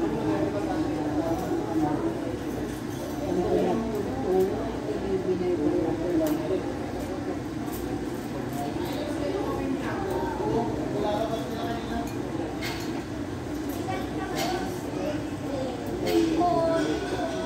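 Indistinct chatter of voices, continuous throughout, with a few faint clinks.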